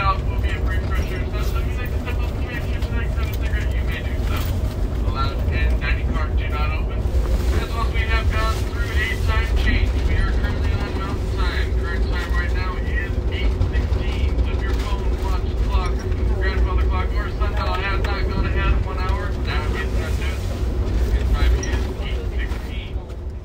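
A conductor's announcement over a passenger train's public-address system, talking about the coming Gallup stop and the time, over the steady low rumble of the moving train.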